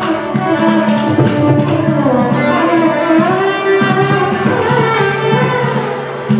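Carnatic ensemble music: a melody line gliding smoothly between notes over a steady low drone.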